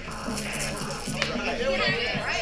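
A horror film's soundtrack playing from a screen: music with voices.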